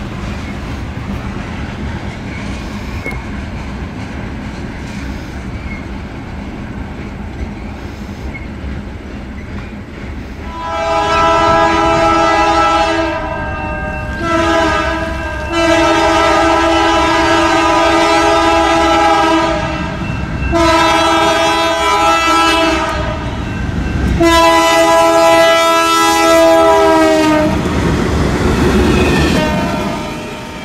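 Freight cars rumbling steadily across a railroad overpass. Then a GE Dash 9 freight locomotive's multi-tone air horn sounds five blasts for a grade crossing, the second one short and the third the longest. Near the end comes the rumble of the train passing close by.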